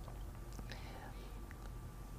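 A quiet pause in the talk: faint room tone with a steady low hum and a few soft small clicks.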